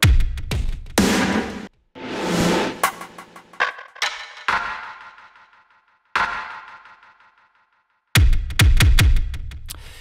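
Drum samples processed with delay, distortion and compression, played one after another from a keyboard through Studio One's Impact drum sampler. The hits are separate, some with long fading tails, and a quick run of heavy low hits comes near the end.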